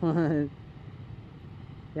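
A short laugh, then a motorcycle engine idling steadily: the Yamaha FZ-09's three-cylinder engine at rest.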